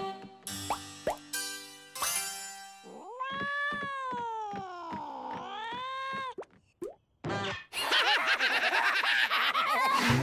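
Cartoon soundtrack of music and comic sound effects. In the middle, a long cartoon voice-like tone glides down and back up. From about eight seconds in comes a dense, rapidly pulsing burst of cackling cartoon laughter.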